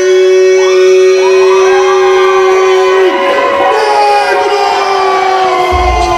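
A ring announcer's voice over the PA holding one long drawn-out note for about three seconds, then carrying on with further held notes, in the manner of stretching out a fighter's name. A low rumble and crowd noise come in near the end.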